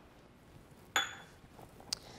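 A small stainless steel prep cup set down on a granite countertop: a single sharp metallic clink about a second in that rings briefly, followed by a faint short click near the end.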